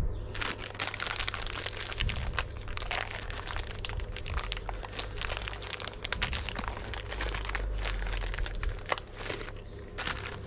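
Plastic packaging crinkling as small plastic push-fit plumbing fittings are handled and unpacked, with many short clicks and taps as the parts are picked up and set down on a glass tabletop.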